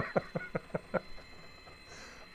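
A man laughing in a quick run of short bursts that fade out about a second in, leaving a faint steady high whine from the Arduino/GRBL-driven coil winder as it winds wire onto the bobbin.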